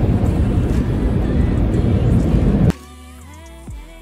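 A loud steady rushing noise, heaviest in the low end, cuts off abruptly about two and a half seconds in. Quieter background music with a sung melody follows.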